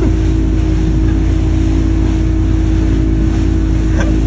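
Motorboat under way: its engine runs steadily with a constant drone, under a loud, even rush of wind and water noise.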